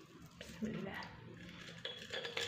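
Faint rustling and light ticks of fingers crumbling dried chili flakes onto paper, with a brief low voice a little way in.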